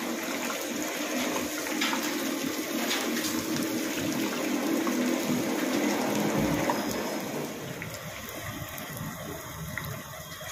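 Medu vadas (urad dal fritters) deep-frying in a wide kadhai of hot oil: a steady sizzle, a little louder for the first seven seconds or so, then easing slightly.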